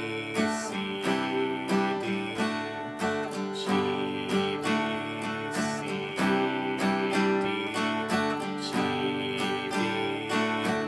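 Steel-string acoustic guitar strummed in a steady strum pattern through the verse chords (G, D, C, A minor), each strum ringing into the next.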